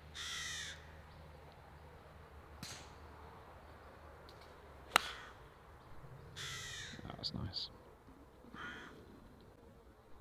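A single sharp crack of a golf club striking the ball on a tee shot, about halfway through. Crows caw several times around it.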